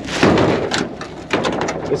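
Heavy rocks scraping and thudding against the metal bed of a mini truck as they are shoved into place, in two rough bursts, the first the louder.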